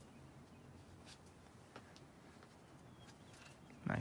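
Faint, quiet outdoor background with a few soft short sounds from the climbing. Near the end comes a sudden loud human vocal burst, the start of a shout or effort grunt.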